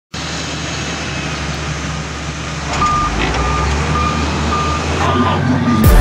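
A heavy construction vehicle's engine runs steadily with a low rumble. From about halfway in, its reversing alarm beeps at even intervals, showing the machine is backing up. Music with a beat starts right at the end.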